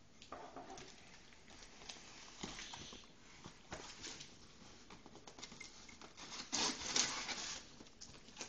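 A cardboard shipping box being opened by hand: faint scattered scrapes, rustles and small clicks of cardboard, with a louder scraping stretch about six and a half seconds in.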